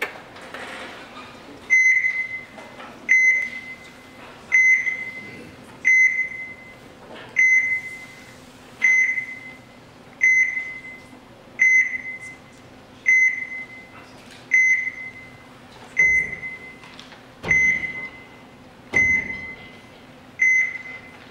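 A single high electronic beep with a short ringing tail, repeating steadily about every one and a half seconds from about two seconds in, over a faint low hum. The last few beeps come with a dull low thump.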